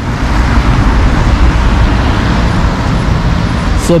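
Steady road traffic noise from cars on the street, with a strong low rumble.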